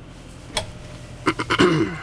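Wooden wardrobe doors clicking open, with a sharp catch click about half a second in and two more clicks past a second. Then a man clears his throat, the loudest sound.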